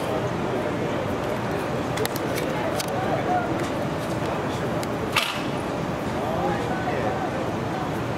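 Crowd murmur: indistinct voices of people talking over a steady hum of street noise, with one sharp click about five seconds in.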